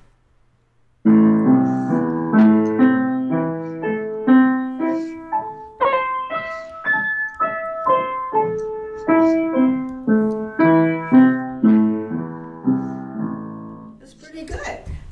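Upright piano played with both hands in A minor, about a second in starting a flowing run of notes that climbs up the keyboard and comes back down, then rises again.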